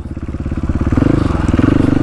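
Single-cylinder engine of a KTM 450 supermoto dirt bike running on the throttle, picking up revs about a second in.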